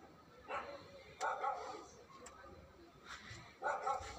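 A dog barking a few times in short bursts over faint background noise.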